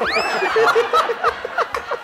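Several men laughing and chuckling together. It opens with a high, sliding squeal that falls away, then breaks into short, overlapping laughs.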